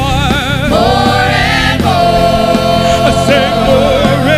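Live gospel worship song: worship singers on microphones holding long, wavering notes over steady instrumental accompaniment.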